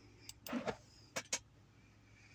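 Faint low-level pause: a soft breath and a few small sharp clicks, two close together a little over a second in, over a steady low hum.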